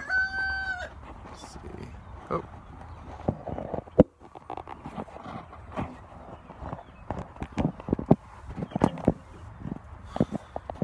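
A rooster crowing, the held end of the crow stopping about a second in, followed by a run of irregular clicks and knocks from handling, with one sharp knock about four seconds in.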